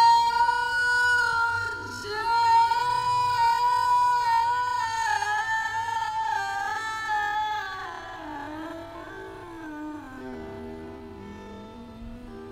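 A female soul singer holds long high notes with a slight waver over quiet accompaniment. After about eight seconds her voice drops to softer, lower notes that glide down.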